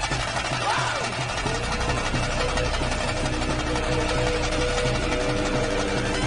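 Dramatic film background music: a fast, steady drum rhythm under held tones, with a short rising glide about a second in.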